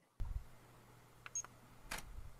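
Room noise cuts in with a low thud, then a pair of short clicks with a brief high beep a little over a second in, and a louder click near the end.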